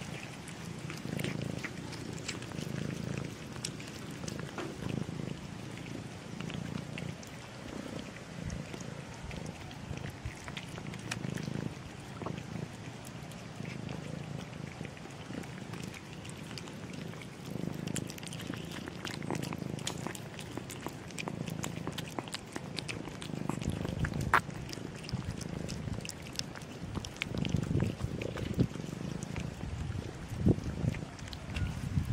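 Cats eating wet food from a shared tray, with a low purr that swells and fades about once a second and many small wet chewing and lapping clicks.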